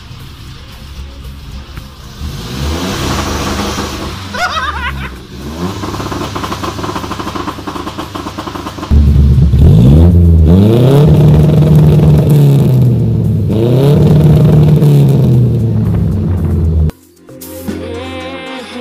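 Carburetted Nissan A15 four-cylinder engine revving through a large-bore exhaust, quieter at first and then much louder from about halfway. It is revved up repeatedly and held at a flat ceiling between dips, a sign of the newly fitted soft-cut rev limiter holding the revs. The sound cuts off suddenly near the end.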